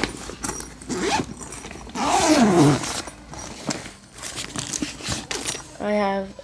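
Zipper of an Adidas backpack being pulled open in several short noisy strokes, with the bag rustling. A short falling vocal sound comes about two seconds in.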